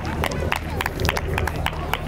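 Footsteps of two firefighters in turnout gear walking on packed dirt: a quick, irregular run of sharp footfalls and gear clicks, several a second, over a steady low hum.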